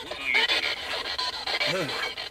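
Handheld spirit box (ghost box) sweeping through radio stations: a hiss chopped into rapid, evenly spaced steps, with brief snatches of radio voice and music caught in between.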